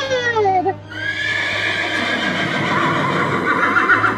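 A horse whinnying: one long neigh that wavers near its end, led in by a sliding, falling tone in the first second, as Santa turns into a horse.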